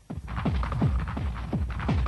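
Hard techno (hardtek) track with a fast kick drum, each hit dropping steeply in pitch, about four hits a second over a steady low bass. The music drops almost to silence right at the start and the beat comes back in a fraction of a second later.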